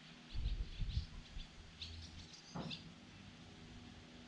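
Small birds chirping in short, high calls: a few in the first second and a cluster around the middle. Underneath is a low rumble, loudest in the first second.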